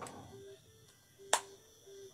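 A quiet pause with one sharp click a little over a second in, and a few faint short notes all at one pitch.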